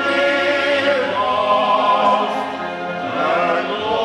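Male voices singing together in harmony, holding long sustained notes that move to new pitches about a second in and again near three seconds.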